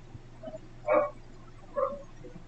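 Two short, sharp calls, about a second in and again near the end, over a faint steady hum.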